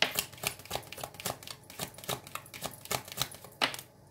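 A deck of oracle cards shuffled by hand: a quick, irregular run of card flicks and clicks, with a louder snap near the end.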